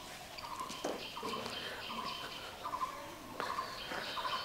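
Faint short bird chirps and calls repeating through the outdoor background, with a couple of soft footsteps on a concrete path.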